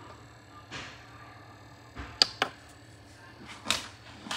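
A few sharp clicks and knocks: three in quick succession about two seconds in, and a softer, noisier one near the end, over a faint low hum.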